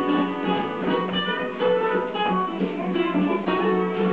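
Guitar music: an instrumental stretch of a children's action song about zoo animals.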